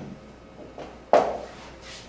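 Felt-tip marker scratching on a whiteboard in one short stroke about a second in, over quiet room tone.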